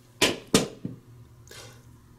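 Two sharp clicks about a third of a second apart, then a fainter third, from handling a freshly crimped glass vial and its hand crimper.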